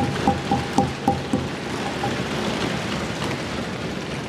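Members of parliament thumping their wooden desks in applause: distinct knocks for the first second or so, then merging into a dense, steady pounding patter.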